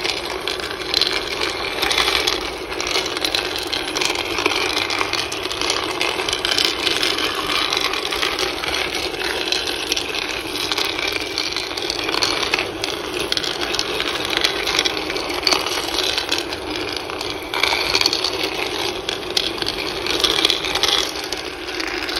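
Chulucanas white 'porcelain' cocoa beans tumbling in a cocoa-bean roaster's pan, swept round by its metal stirring paddle during a gentle 120 °C roast: a steady, dense clatter of small clicks, rolling like pebbles on a beach.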